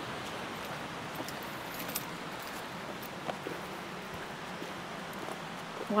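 Steady rush of a rocky creek flowing, with a couple of faint footsteps on a dirt trail.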